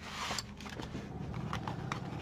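Paper and card rustling as a bundle of paper cutouts is drawn out of a card pocket and set down, strongest in the first half second, followed by a few light ticks of handling.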